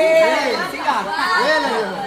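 Several people talking and calling out over one another in lively group chatter.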